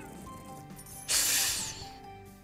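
An online video slot game's soft background music with steady tones, then about a second in a loud hissing whoosh sound effect that fades out within a second as the spinning reels come to a stop.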